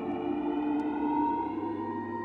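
Ambient electronic music: several sustained synthesizer tones, slowly sliding down in pitch during the first second or so, then held.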